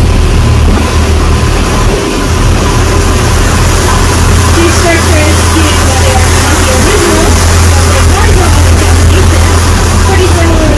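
Tour boat's engine running steadily with a deep, even drone, under wind noise on the microphone from the moving boat, with faint voices of passengers in the background.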